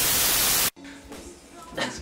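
A short, loud burst of static hiss, like a detuned TV, used as an edit transition; it cuts off suddenly after well under a second, leaving quiet room sound.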